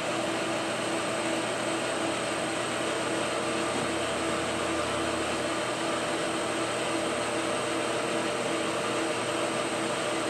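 Milling machine spindle with a boring head running in reverse, not yet cutting: a steady motor and gear whir with a faint hum under it.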